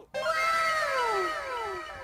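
Edited-in transition sound effect: a pitched tone that slides downward, repeated in several fading echoes over about two seconds.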